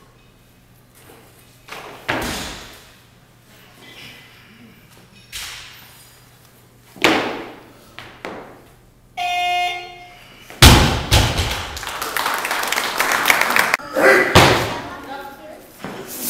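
A one-second buzzer, the referees' down signal, sounds about nine seconds in. It is followed by a loaded barbell with bumper plates dropped from overhead onto the lifting platform with a loud thud. Cheering and clapping follow, with a second thud about four seconds later.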